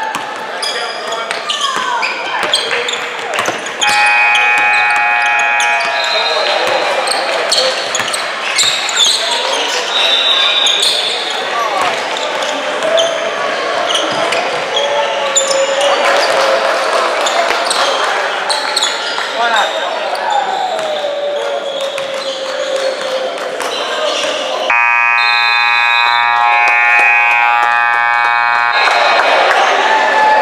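Indoor basketball game: a ball bouncing on a hardwood gym floor, sneakers squeaking and players calling out. The scoreboard horn sounds twice, briefly about four seconds in and longer near the end, the long blast signalling that time has run out.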